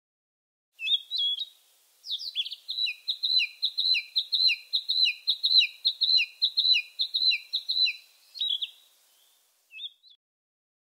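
A songbird singing: two short calls, then a fast run of about fifteen repeated chirping notes over a held high whistle, trailing off with a few last notes near the end.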